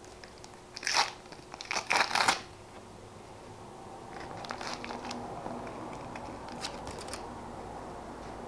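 Plastic-foil football sticker packet crinkling loudly as it is torn open, in short crackly bursts about one and two seconds in. Then a softer rustle of card and wrapper as the stickers are slid out, with a few light clicks.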